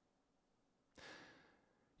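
Near silence, with one faint breath into a close microphone about a second in.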